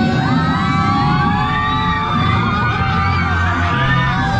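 Several riders screaming and whooping together, long rising and falling yells, over loud rock music on a drop-tower ride.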